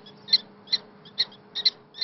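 Prairie dog barking: a run of short, sharp, high chirps repeated a little over twice a second.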